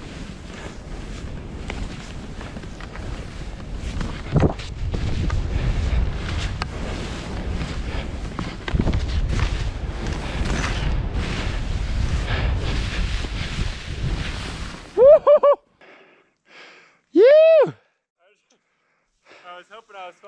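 Wind rushing over the microphone and skis hissing and crunching through deep powder snow for about fifteen seconds, then cutting off suddenly. Two loud shouted calls follow, the second a long call that rises and then falls.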